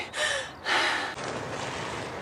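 A woman panting to catch her breath after running: a short gasp, then a longer heavy breath about a second in, followed by steady outdoor background hiss.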